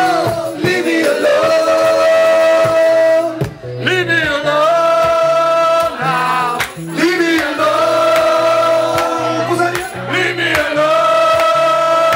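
Live acoustic band with guitars, several male voices singing long held notes together in phrases of about three seconds with short breaks between.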